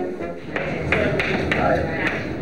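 Chalk tapping and scraping on a blackboard as a name is written, a few short sharp taps, with background music still playing faintly.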